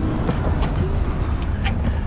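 Steady low rumbling noise, with a few light clicks and rustles as the carpeted trunk floor board of a sedan is handled and lifted.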